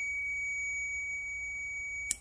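Continuity tester buzzing with a steady, unbroken high-pitched tone, signalling a closed circuit through the relay module's normally closed contacts.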